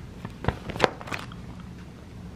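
Clear plastic sheet protectors in a ring binder crackling as the pages are handled: a few sharp crinkles in the first half, over a steady low hum.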